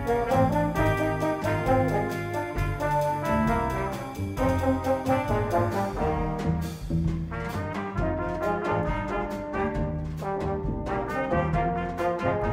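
Live small jazz band: trumpet and two French horns playing a melody together over double bass and drum kit, with steady cymbal strokes.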